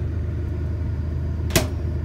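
A steady low machine hum, with a single sharp click or knock about one and a half seconds in.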